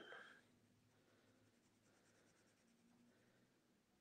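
Near silence, with faint scratching of a pen drawing up-and-down strokes on paper.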